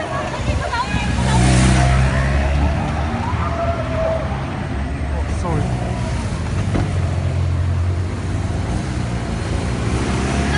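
Cars of a motorcade driving past on a city street, a steady low engine and tyre rumble, with voices over it, as heard on a phone recording.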